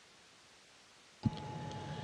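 Near silence, then a sharp click about a second in as a live audio feed cuts in, followed by a steady hum and hiss with a held tone.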